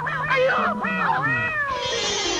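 A woman's high, wavering wailing cries that slide up and down in pitch, fading out near the end.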